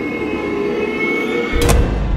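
Tense film-score drone held on steady tones. About one and a half seconds in, a sudden loud sharp hit cuts across it, followed by a low rumble.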